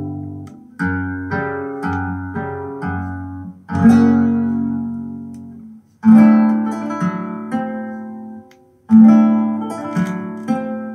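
Flamenco guitar record playing from vinyl through a valve-amplified horn loudspeaker system. A run of quick plucked notes gives way to three loud chords, near 4, 6 and 9 seconds in, each left to ring and fade.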